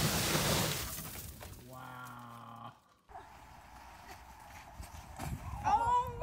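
Snow sliding off a roof in a mass, a loud rushing noise that fades out after about a second and a half. It is followed by a short held tone, then a person's voice near the end.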